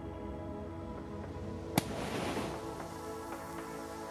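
Background music, broken about two seconds in by a single sharp pop with a brief rush after it: a methane-filled balloon bursting and its gas igniting.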